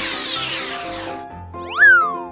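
Cartoon background music with sound effects: a rushing whoosh that fades out in the first second, then, near the end, a loud pitched effect that shoots up and slides back down.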